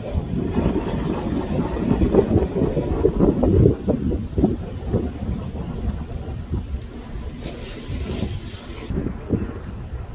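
Wind buffeting the microphone in uneven gusts, a loud low rumble, with a brief hiss rising in the upper range about three-quarters of the way through.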